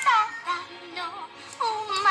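Music with a high singing voice, its notes gliding up and down and wavering on a held note near the end, played from a TV soundtrack.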